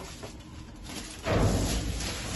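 Trash being shifted inside a dumpster: a rustle and crackle of plastic bags and cardboard with low thumps. It starts suddenly a little over a second in.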